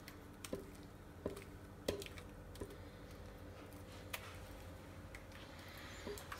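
Silicone spatula scraping a glass mixing bowl, with a handful of short, faint taps and soft squelches as the last of a wet feta-and-egg filling is scraped out.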